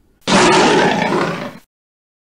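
Bear roar sound effect: one loud, rough roar lasting just over a second that cuts off abruptly.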